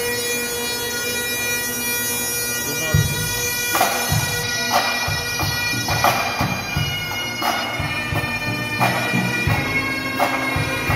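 A pipe band playing: Great Highland bagpipes sound a melody over their steady drones, and the drums (snare, tenor and bass) come in about three seconds in with regular strokes and snare rolls.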